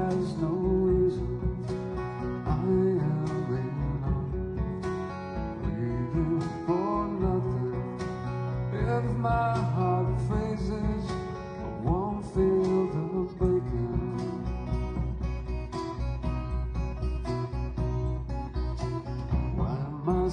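Live band playing an instrumental passage of a slow folk song between sung lines: acoustic guitar plucked over a steady bass, with a few notes that slide upward in pitch now and then.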